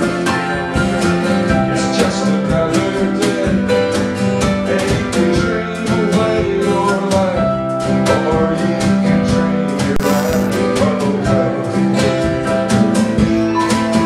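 A small live band playing an instrumental passage: strummed acoustic guitar over keyboard, with a drum kit keeping a steady beat.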